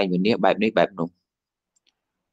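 A man preaching in Khmer speaks for about a second and stops. The rest is dead silence, with only a faint tick or two.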